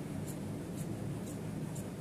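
Tailor's shears cutting through layered shirt fabric and lining with a crisp snip about twice a second, over a steady low hum.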